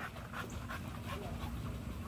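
An American Bully dog panting rapidly: a soft, quick, even run of breaths, about four or five a second.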